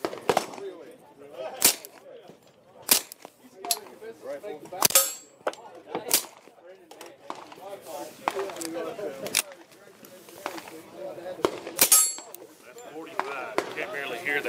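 Suppressed .45 ACP 1911 pistol with a Silencer Central Banish 45 suppressor firing a slow string of about eight shots, one to two seconds apart. It is shooting 230-grain ball ammunition, which is described as nice and quiet through the suppressor.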